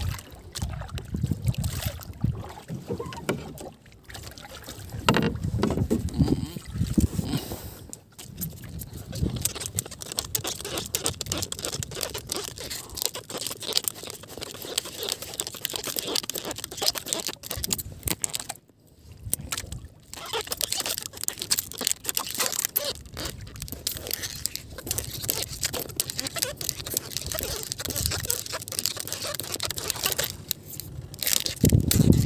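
Water lapping and splashing against the hull of a small outrigger boat drifting on the open sea, with irregular knocks and slaps and no engine running.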